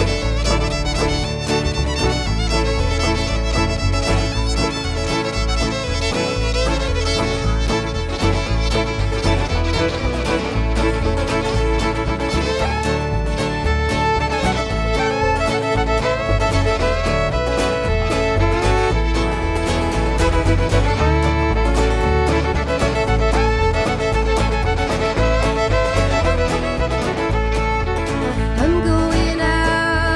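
Live country band playing an instrumental break, with a fiddle taking the lead over the band's steady rhythm and bass.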